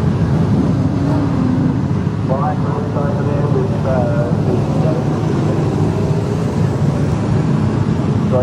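V8 dirt-track sedan engine running at low speed, a steady low rumble, with a distant voice heard briefly over it a few seconds in.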